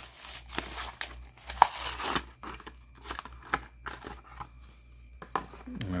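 A Hot Wheels blister pack being torn open by hand: the cardboard backing tearing and the plastic blister crinkling. A dense rustle over the first two seconds gives way to scattered crackles and clicks.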